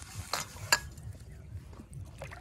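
Fingers mixing and pressing a crumbly bait mixture in a steel plate, a soft scraping rustle with two sharp clicks against the metal in the first second.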